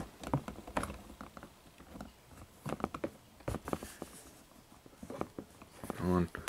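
Light, irregular plastic clicks and taps as a small Lego Bionicle figure and its parts are handled and set down on a plastic tabletop.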